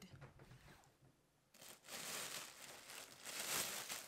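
Packaging rustling and crinkling as it is handled: a short rustle, a moment of near silence about a second in, then steady rustling to the end.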